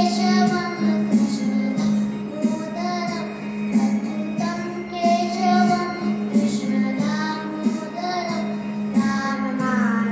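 A boy singing a song to a Yamaha electronic keyboard accompaniment, over a steady held low note from the keyboard.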